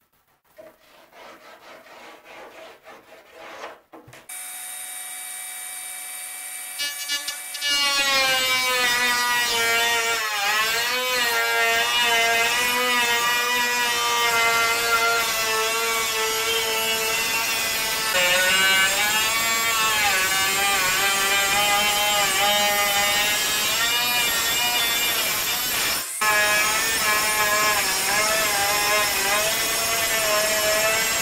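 Small handheld power sanding tool with a flap-wheel head sanding the engine bed. After a quiet, scratchy start the motor comes in, runs loud from about eight seconds in, and its whine sags and recovers as it bites into the work. It cuts out briefly near the end, then runs again.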